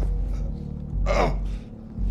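A man gasping and choking for breath, with one strained gasp that falls in pitch about a second in, over a low, droning music score with a pulsing bass.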